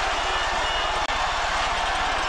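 Stadium crowd noise from the broadcast, an even roar with a steady low buzz beneath it. The sound cuts out for an instant about a second in.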